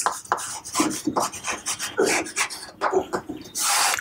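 Chalk writing on a chalkboard: a run of short, irregular scratchy strokes as a word is written, ending near the end in one longer stroke as the word is underlined.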